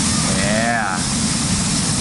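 Steady roar of a waterfall close by, with a person's brief drawn-out vocal exclamation that rises and falls in pitch about half a second in.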